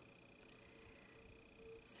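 Quiet room tone in a pause in a woman's talk: a faint steady high-pitched whine, a small click about halfway through, and a short hiss of breath near the end just before she speaks again.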